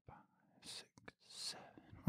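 Faint breathing into a close microphone during a slow, paced exhale: two soft breath puffs, one under a second in and another about a second and a half in.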